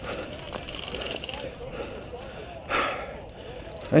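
Faint distant voices carry over outdoor background noise, with one short burst of noise about three seconds in.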